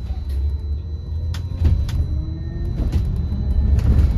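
Cabin sound of a Wright StreetDeck Electroliner battery-electric double-decker bus on the move: a steady low rumble with several sharp knocks and rattles from the body and fittings, and a faint rising whine from the electric drive about halfway through.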